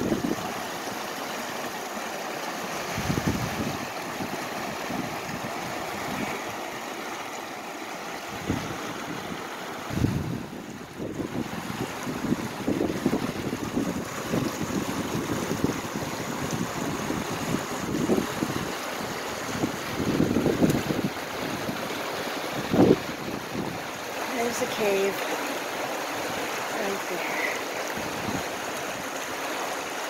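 Steady rush of flowing river water, with gusts of wind buffeting the microphone in irregular low bursts.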